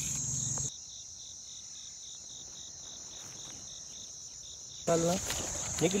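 Insects trilling: a steady high-pitched buzz with a faint regular pulse about three times a second. A man's voice comes in near the end.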